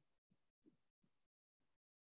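Near silence: room tone, with a few very faint, brief low sounds in the first half.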